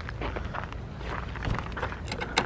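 Footsteps on sandy, gritty ground over a low rumble of outdoor noise, with a few faint ticks.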